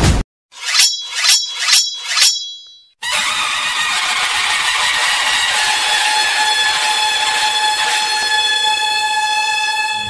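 News-intro sound effects: four quick metallic chime-like hits about half a second apart, each ringing briefly, then a loud held chord of high steady tones that runs on until it drops near the end.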